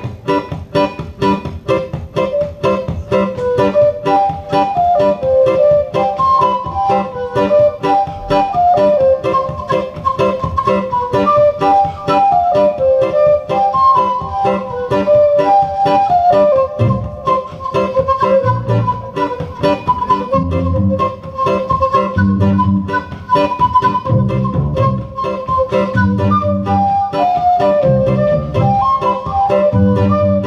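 Acoustic guitar and a whistle playing an upbeat folk tune, a fast run of melody notes over quick strumming. Deeper bass notes join in about halfway through.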